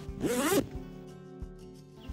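The stiff waterproof HydroLok zipper of a YETI Panga dry duffel being pulled: one short zip about a quarter second in, over background music.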